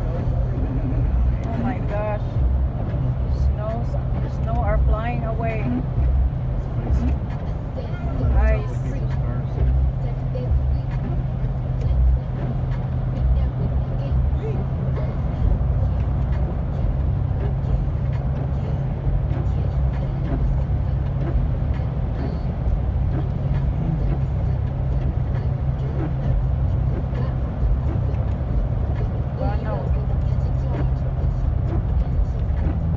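Steady low road and engine rumble inside a moving car's cabin, tyres on a wet highway. A voice comes and goes in the first nine seconds or so.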